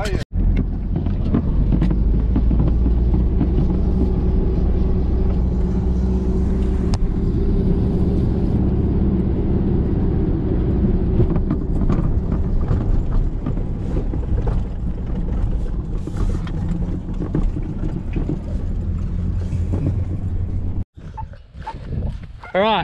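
A ute's engine and cab noise while driving over a paddock: a steady low drone with occasional knocks and rattles. It cuts in just after the start and stops abruptly about a second before the end.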